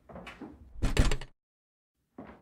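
A door shutting with a solid thud about a second in, after softer shuffling movement, then cutting off suddenly.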